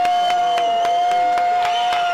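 A woman's voice holding one long, high sung note, steady in pitch, over a crowd with scattered clapping.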